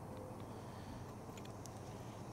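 Faint steady low background hum with a few light ticks from the wooden parts of a bottom pollen trap being handled.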